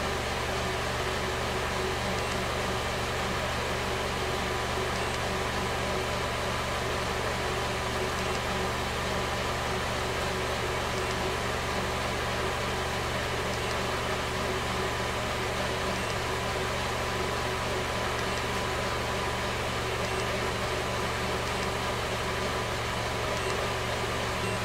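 Car engine idling steadily: a constant low hum with a faint steady whine over it, heard from inside the cabin.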